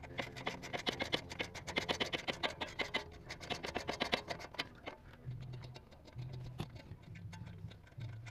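Socket ratchet clicking in quick runs as a steering-knuckle bolt is backed out with a 13 mm 12-point socket, busiest in the first five seconds and sparser after.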